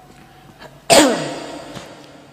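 A man's single sudden, explosive burst of breath and voice, like a sneeze or cough, about a second in, its voiced tail falling in pitch as it fades over half a second.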